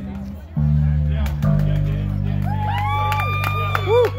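Live rock band's electric guitars and bass holding the final chord of a song and letting it ring, the chord changing once about a second in. A high voice calls out over the ringing chord in the last second and a half.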